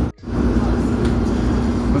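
Steady drone of running kitchen machinery fans, with a constant low hum. The sound cuts out for a split second near the start.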